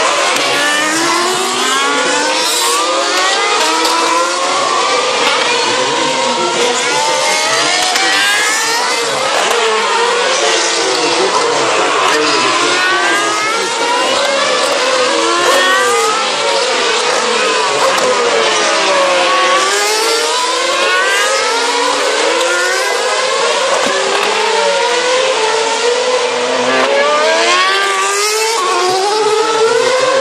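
Several 2013 Formula One cars' 2.4-litre V8 engines, one after another, downshifting into a slow corner and accelerating hard out of it on a wet track. Their high engine notes overlap and rise and fall almost without a break.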